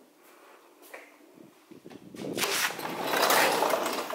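A sliding glass patio door rolling open along its track: a rushing, scraping slide that starts about two seconds in and grows loud near the end.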